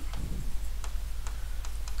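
Faint, irregular clicks of a pen tip tapping on an interactive display's glass while words are written, over a steady low electrical hum.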